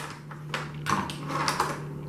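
Small plastic toy pieces and a clear plastic packaging tray being handled: a few soft crinkles and clicks, about a second in and again a little later, over a faint steady hum.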